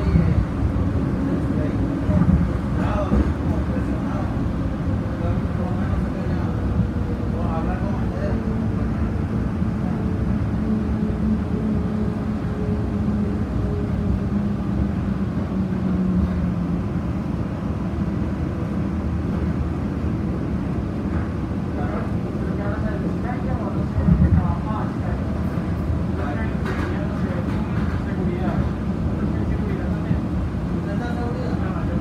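Cabin of an airport automated people mover tram running along its elevated guideway: a steady rolling rumble with a faint electric motor whine that shifts in pitch partway through, and a few short bumps.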